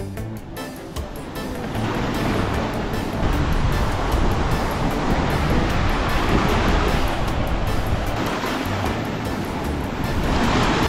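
Sea surf washing and breaking on a rocky shore, a steady rushing that swells and eases, mixed with background music.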